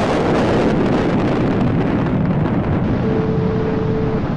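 Sound effect for an animated title intro: a loud, rushing whoosh-and-rumble whose pitch sweeps downward and then holds, with a brief steady tone joining near the end.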